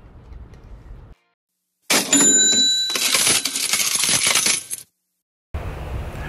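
Coins-and-cash-register sound effect, beginning about two seconds in: a short bell-like ring, then about three seconds of coins clattering and jingling, cut off abruptly.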